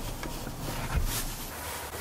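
Low steady rumble of a car's cabin, with a faint bump about a second in.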